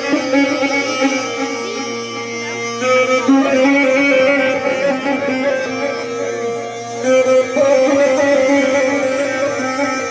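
Folk wind pipe played through a microphone: long held notes that change pitch every second or two, over a low steady drone.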